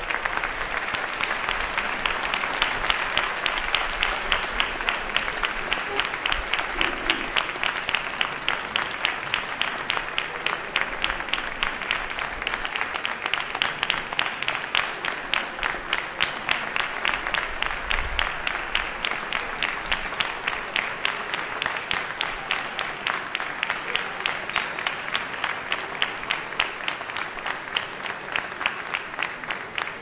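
Audience applauding steadily, with single claps standing out about three times a second.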